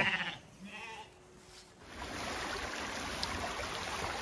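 Faint sheep bleats in the first second. From about two seconds in comes the steady sound of fast water running down a narrow concrete channel.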